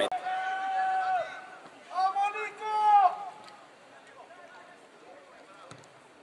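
A man's drawn-out shout of "bien", then a second long, wavering shout about two seconds in, followed by faint open-air background for the rest.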